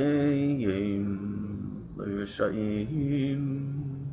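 A man's voice chanting a passage of Talmud in the traditional sing-song study tune, in two long phrases with held notes and sliding pitch. It ends with a short laugh.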